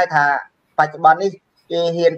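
Speech only: one voice talking, broken by two short silent pauses.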